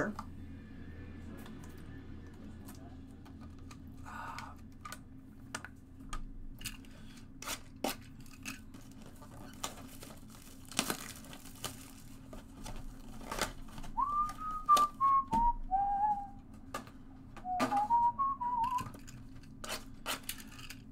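Plastic wrap crinkling and cardboard clicking as a box of Topps Finest baseball cards is opened and its wrapped mini boxes handled. A man whistles a few short notes in two brief phrases near the end.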